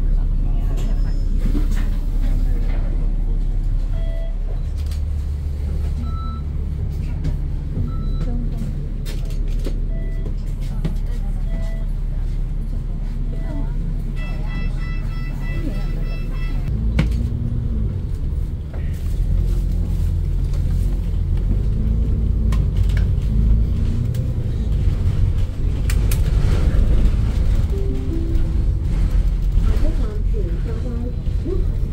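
Double-decker bus's diesel engine running in city traffic, heard from the upper deck: a low rumble that shifts in pitch several times as the bus slows and pulls away. Short electronic beeps sound every couple of seconds in the first half, and a quick run of rapid higher beeps comes about halfway through.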